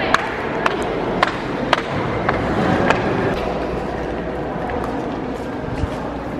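Sharp clicks and knocks, about one every half second through the first three seconds, over a steady murmur of voices and a low rumble at a cave boat landing.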